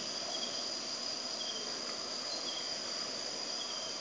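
Insects chirring faintly in the background: a steady high tone over a hiss, with short chirps about once a second.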